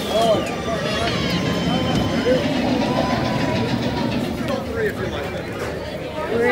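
Several people chatting over steady mechanical noise from the cars of a mine-train roller coaster.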